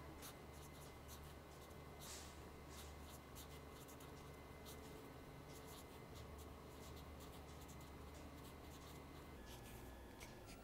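Felt-tip marker writing on paper: a faint run of short strokes, over a low steady hum.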